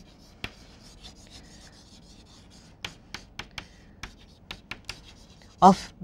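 Chalk writing on a chalkboard: faint scratching strokes broken by a series of sharp little taps as the letters are formed.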